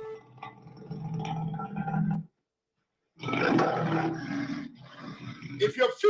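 A man's rough, breathy voice close to the microphone, in two stretches broken by about a second of total dropout, before clear speech starts near the end.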